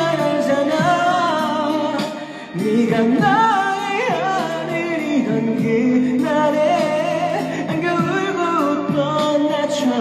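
A man singing a Korean ballad into a handheld karaoke microphone over a backing track, his held notes wavering with vibrato. A short break in the voice comes about two seconds in.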